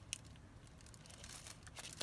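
Faint rustling of paper as a thick painted journal page is handled, with a light click just after the start and a few soft ticks near the end.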